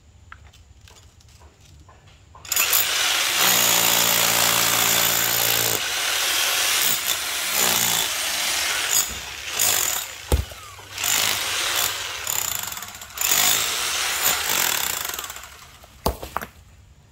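INGCO electric rotary hammer working as a jackhammer, driving a chisel bit into gravelly ground. It starts about two and a half seconds in and runs in bursts with brief pauses until just before the end, with one sharp knock about ten seconds in.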